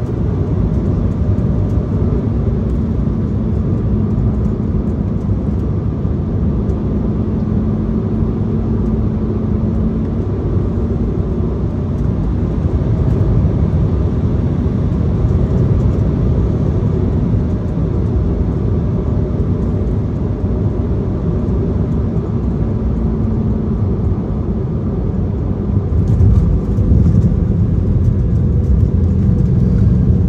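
Cabin noise of an Embraer ERJ-170 on final approach: the steady rumble of its jet engines and airflow over the wing, with a few faint steady engine tones. About 26 s in, the rumble grows louder and deeper as the jet touches down and rolls out on the runway.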